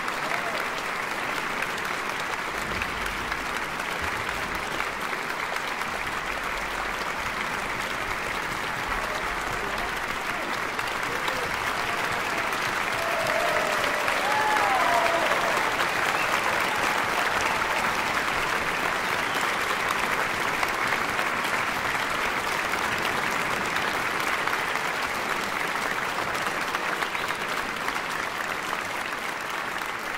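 Concert audience applauding, swelling a little about halfway through, with a brief call rising over the clapping near the middle.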